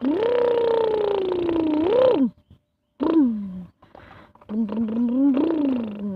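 A person making engine noises with the voice for a toy bulldozer. A long held drone of about two seconds is followed by a short falling one, then a wavering, pulsing hum near the end.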